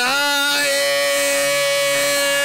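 A singer holding one long, steady note.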